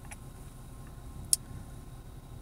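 Low steady background hum inside a car cabin, with one short sharp click about two-thirds of the way through and a few fainter ticks.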